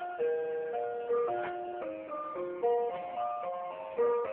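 Climbing Santa toy playing a simple, tinny electronic Christmas melody through its small built-in speaker, with clear held notes changing several times a second.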